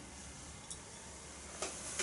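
A glass beer bottle set down on a towel-covered table, giving a soft knock near the end; otherwise a quiet room.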